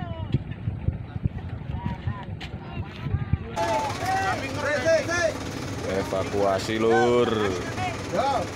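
Wind rumbling on the microphone with faint voices. About three and a half seconds in the sound changes abruptly to several men shouting and calling out to one another, loudest near the end.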